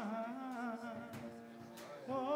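Men's gospel chorus humming a long held low note, with a solo male voice singing a wavering line over it, growing softer toward the end.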